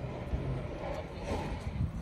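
A truck engine's low steady hum under outdoor background noise.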